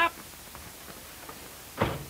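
A door slamming shut once near the end, over the faint steady hiss of an old film soundtrack.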